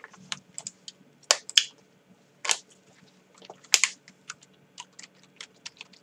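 Typing on a computer keyboard: irregular keystroke clicks, a few of them louder than the rest.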